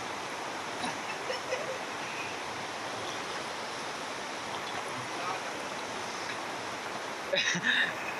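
River water flowing steadily, an even rushing sound.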